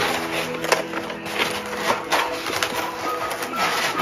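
Hands rustling and clicking through cardboard gift packaging, searching the box, under background music holding a long sustained chord.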